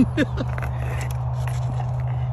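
Thin new pond ice cracking and pinging under a skater, with a few sharp cracks and short falling chirps over a steady low hum.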